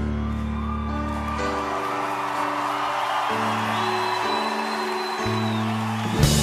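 Live band holding slow, sustained chords that change every second or two, with a crowd cheering over them and a high whistle in the second half.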